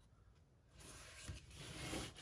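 Faint rustle of a sheet of embossed paper being handled and slid into place on a paper-covered journal cover, starting about half a second in and growing slightly louder.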